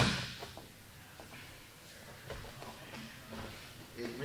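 A sharp slap right at the start, then faint scuffing and soft knocks of two grapplers shifting their bodies on a padded mat.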